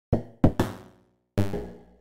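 Synthesized percussion from a Max/MSP patch: randomly triggered impulses excite a bank of comb filters, giving short pitched knocks that ring and fade. About four hits fall at irregular spacing, two close together just before the middle.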